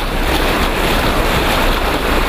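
A car's front wheel ploughing through deep, muddy flood water on a road, throwing up spray: a loud, steady rush of splashing water.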